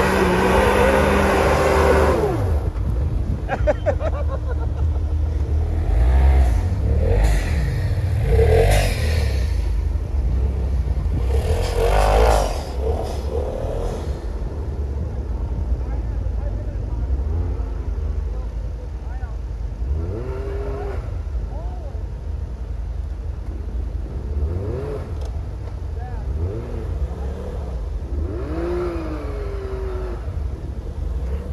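Can-Am Maverick X3's turbocharged three-cylinder engine revving hard in repeated bursts as it spins in deep snow, loudest in the first dozen seconds, then a little quieter, with shorter rising-and-falling revs as it drives off.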